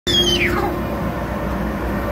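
Air blower of a floating-ball exhibit running steadily, a constant rush of air with a low hum. Right at the start a brief high sound falls sharply in pitch.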